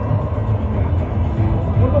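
Large-stadium ambience: a steady, loud low rumble of crowd and PA-system sound echoing around the stands.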